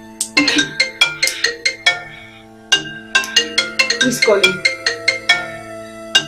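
Mobile phone ringing with a melodic ringtone: quick pitched notes over a steady low beat.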